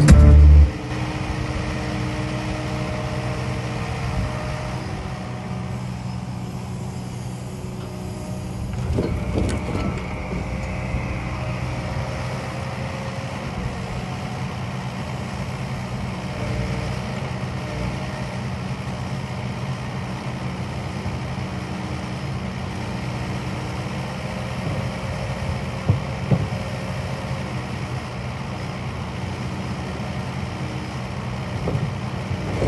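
Kubota KX080-4 excavator's diesel engine running steadily under load while its timber grab unloads logs from a lorry trailer. A few short knocks of logs, about nine seconds in and again near 26 seconds.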